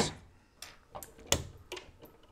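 A few light clicks of metal wire strippers gripping and working a copper wire end at a plastic electrical box, about four clicks, the loudest a little past halfway.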